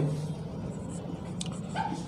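A short squeak of a marker on a whiteboard near the end, with a faint click before it, over a low steady room hum.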